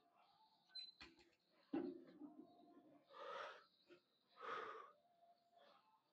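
Faint, heavy breathing after a set on a leg press: two long breaths about three and four and a half seconds in, with a couple of faint knocks in the first two seconds.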